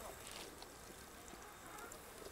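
Faint, soft splashing of raw chicken pieces sliding off a steel tray into a pan of thin curry gravy.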